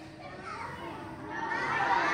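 Many children's voices chattering at once, quiet at first and swelling into a loud babble near the end.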